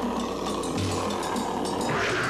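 Dense, rumbling action sound effects mixed with music, the kind laid into an adventure-film soundtrack. A falling sweep begins near the end.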